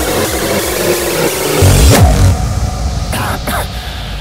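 Hardcore gabber electronic music with distorted kick drums and dense synths; about two seconds in, a loud falling sweep hits and the track drops to a sparse break.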